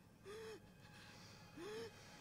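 A person's voice: two short, faint gasps about a second apart, otherwise near silence.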